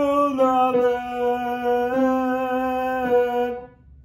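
A man singing the tenor part of a gospel hymn in long, sustained notes that step between a few pitches, then stopping about three and a half seconds in.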